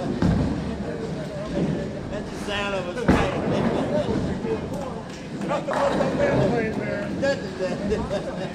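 A bowling ball hits the lane with a sharp thud about three seconds in and rolls away, over the steady clatter and chatter of a busy bowling alley.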